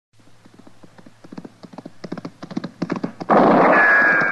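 A horse's hooves galloping, a quick, even run of beats growing steadily louder as it approaches. Just after three seconds in comes a sudden loud burst with a falling whine.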